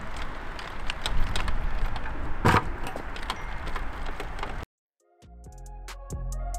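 Clinks and knocks of hand tools on the steel frame and bolts of a boat trailer, with outdoor background noise and one louder knock about halfway through. The sound cuts off suddenly after about four and a half seconds, and music fades in near the end.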